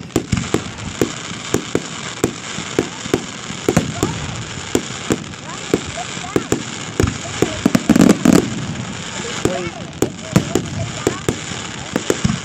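Fireworks going off in quick succession: many sharp bangs, several a second, over a steady background din, with a loud dense cluster about eight seconds in.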